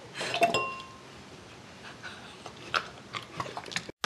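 A drinking glass clinks about half a second in and rings briefly with a clear tone, followed by a few scattered light taps and clicks.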